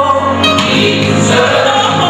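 Recorded gospel choir song, a massed choir singing over a band accompaniment.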